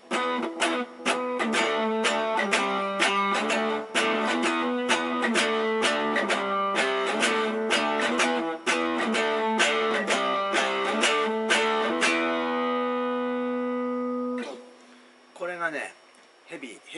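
Electric guitar riff picked with a Fender heavy pick: rapid rhythmic picked strokes for about twelve seconds, ending on a chord left to ring for a couple of seconds before it stops. A brief voice near the end.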